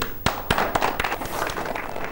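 A small group of people clapping their hands, separate sharp claps about four a second.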